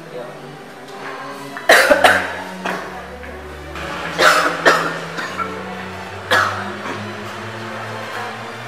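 A man coughing about five times in short fits over steady background music: a pair of coughs about two seconds in, another pair a little after four seconds, and a single cough past six seconds.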